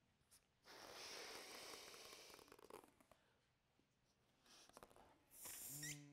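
A long modelling balloon being inflated: a rush of air lasting about two seconds, then brief handling sounds near the end.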